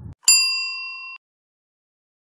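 A single bright bell-like ding, the notification-bell sound effect that marks pressing the bell icon. It rings for about a second and then cuts off abruptly.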